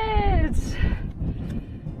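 A woman's drawn-out wordless exclamation of delight, sliding down in pitch and ending about half a second in, followed by a breathy exhale.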